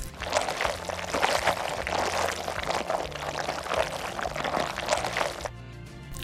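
Chocolate frosting squeezed from a piping bag onto a cake layer: a wet, squishy hiss that runs for about five seconds and stops suddenly, over background music.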